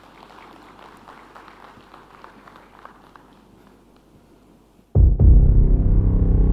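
Faint scattered applause in a hall. About five seconds in, loud, deep, bass-heavy music starts suddenly.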